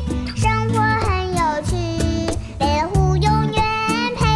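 Children's song: a child's voice singing a Mandarin nursery rhyme over a cheerful backing track with a steady beat.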